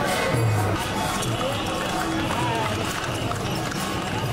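Kirtan sung by a group in procession, voices chanting over a steady beat of low drum strokes about once a second, with hand cymbals clashing throughout.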